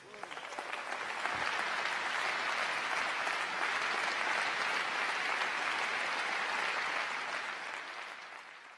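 Large audience applauding. The applause swells over the first couple of seconds, holds steady, then fades out near the end.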